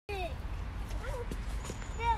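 Brief high-pitched vocal sounds from a child over footsteps on a woodland dirt path, with a steady low rumble on the microphone.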